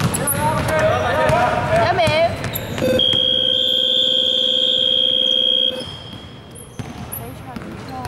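Basketball hall's scoreboard buzzer sounding one steady, loud blast of about three seconds, starting about three seconds in: the buzzer ending the fourth quarter. Players' shouts come just before it.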